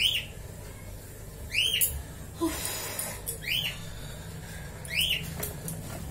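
A short, high squeak that rises and falls, heard four times about a second and a half apart, over a steady low hum.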